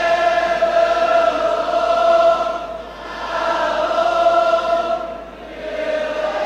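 Many voices singing together in long held notes, like a choir. They come in swelling phrases of about two and a half seconds, each fading before the next begins.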